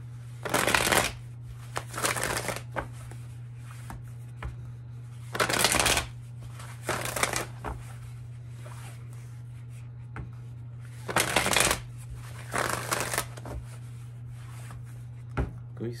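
A Tarot of Dreams card deck being shuffled by hand in six short bursts of about half a second each, mostly in pairs, while the cards are mixed before a spread is drawn. A steady low hum runs underneath.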